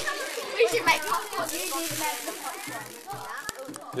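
Children's voices chattering in the background while dried corn kernels and rice rattle in a plastic basket sieve being shaken over a plastic tray; one sharp click near the end.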